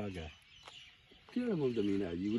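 A man's voice talking, breaking off for about a second early on and then starting again.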